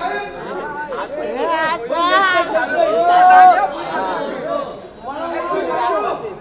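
Several voices talking and calling out over one another, with one long drawn-out call about three seconds in as the loudest moment.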